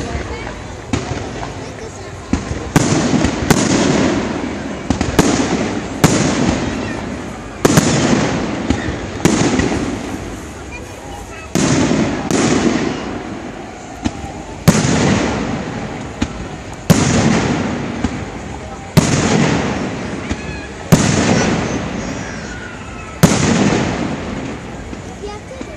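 Aerial firework shells bursting overhead: a dozen or so sharp bangs at uneven intervals, each followed by a rumbling echo that fades out before the next.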